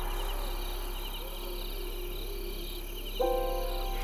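Crickets chirping in a steady, pulsing trill. About three seconds in, a sustained chord of background music comes in and holds.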